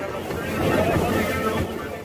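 A motorboat under way, with wind buffeting the microphone over its Honda 150 outboard motor and the water, and voices talking throughout.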